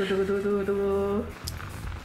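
A person's voice holding one steady note for about a second, a drawn-out vocal 'ooh', followed by a short click as the lid of a stainless-steel stockpot is lifted.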